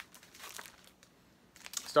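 Faint rustling and crinkling of a stack of glossy paper magazines being picked up and handled, in short scattered bursts with a quiet spell in the middle.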